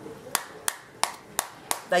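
Wooden spoon striking the rind of a halved pomegranate held cut side down in the palm: a steady series of sharp knocks, about three a second, beating the seeds loose so they fall into the bowl below.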